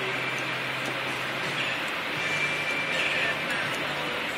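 Steady background room noise: an even hiss with a faint low hum, and no distinct clicks or handling sounds.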